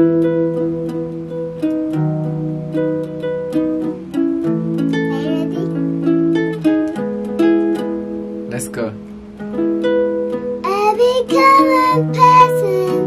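Small acoustic guitar picking a slow chord progression as a four-bar song intro, the notes ringing on and overlapping. Near the end a voice begins singing over it.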